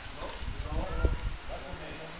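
Caucasian Shepherd puppies giving short, wavering yelping cries as they wrestle, with a low thud about a second in.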